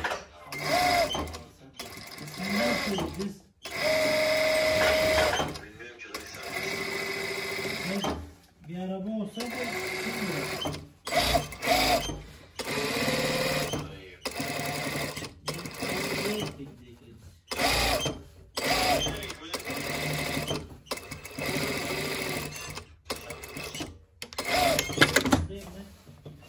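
Brother single-needle industrial sewing machine stitching a seam in a string of short runs, starting and stopping every second or two as the fabric is guided and repositioned.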